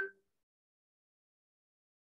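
Near silence, after a brief pitched sound right at the start.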